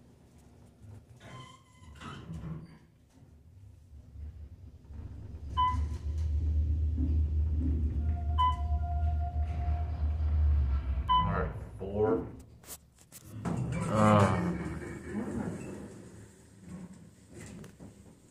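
Otis elevator car travelling down: a low rumble of the moving car for about six seconds, with three short electronic beeps about three seconds apart as it passes floors. Near the end the car stops, with a couple of clicks and voices.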